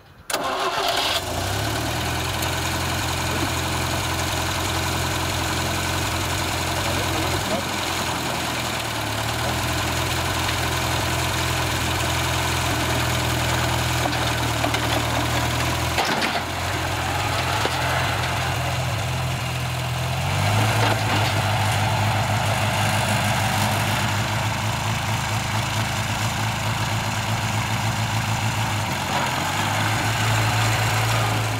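Vintage Massey Ferguson tractor engine starting right at the beginning, then running steadily as the tractor is driven down off a trailer. Its note changes about halfway through and again, a little louder, about two-thirds of the way through.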